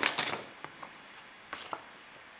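Tarot deck being shuffled by hand: a quick run of card flicks and slaps in the first half-second, then a few single taps of cards and a quiet stretch.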